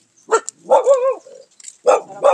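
Dog barking: a short bark about a third of a second in, then a longer, drawn-out bark with a wavering pitch.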